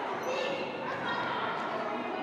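Children's voices and calls echoing in a large school gymnasium, with a basketball bouncing on the hardwood floor.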